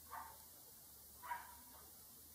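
Near silence: room tone, broken by two faint, brief sounds, one just after the start and one just past the middle.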